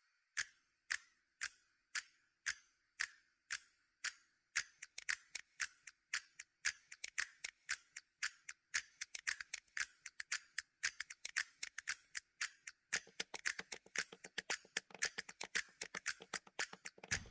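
Clock-like ticking clicks, about two a second at first, that build from about four seconds in into a faster, layered clicking rhythm, with a fuller, lower sound joining near the end: the ticking percussion of a soundtrack's opening.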